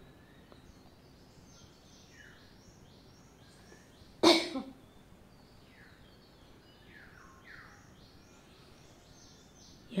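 A single loud, brief human cough about four seconds in, over faint, repeated high chirping in the background.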